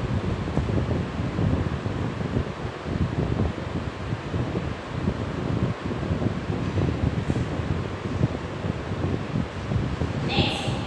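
Steady rushing, buffeting noise of moving air on the microphone, strongest in the low range and wavering in level.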